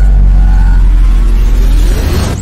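Stock logo-reveal sound design: a loud, deep bass drone held steadily after a falling impact, with a faint rising whoosh coming in near the end.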